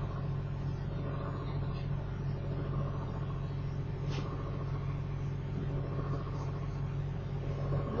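Steady low hum with a light hiss from the recording's background noise, unchanging, with one faint click about four seconds in.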